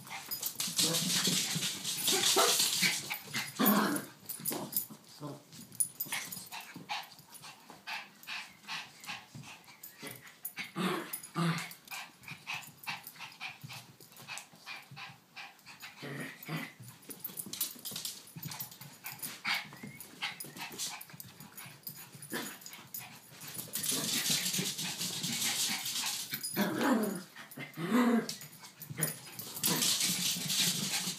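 Two small dogs, a Yorkshire Terrier and a King Charles Spaniel, play fighting: short growls and barks in quick succession, with stretches of rougher rustling noise near the start and in the last few seconds.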